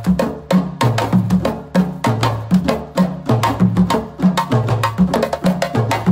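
Several djembe hand drums played together in a steady rhythm, with sharp slaps and tones over a repeating pattern of low drum notes.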